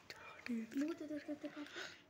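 Quiet speech: a voice talking softly in short phrases from about half a second in, with a few faint clicks near the start.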